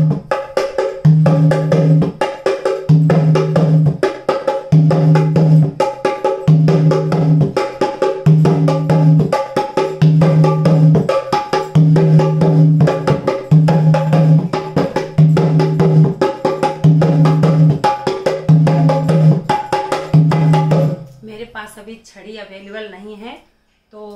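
Dholak played by hand in a bhangra rhythm: rapid strokes on the treble head over a deep bass stroke on the other head that comes back about every two seconds. The playing stops about a second before the end.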